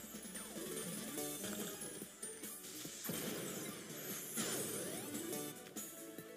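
Sweet Bonanza 1000 online slot game's background music and sound effects during a free spin, with a few sweeping swishes as the candy and fruit symbols drop and clear.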